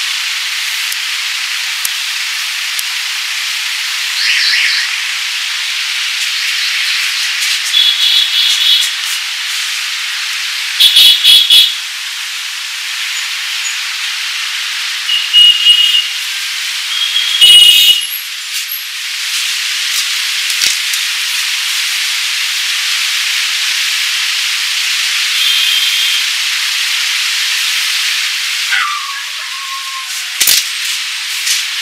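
A cotton towel rubbed over wet hair and scalp: a steady hiss of rubbing with several louder, harsher bursts of scrubbing along the way.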